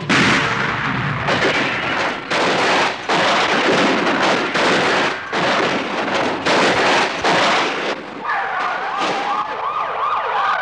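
A large Lincoln sedan rolling over on pavement: repeated crashing impacts and scraping of sheet metal on asphalt over the first eight seconds or so. Near the end a police siren starts, wailing up and down quickly.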